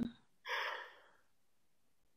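A person's single sharp intake of breath, a gasp about half a second long.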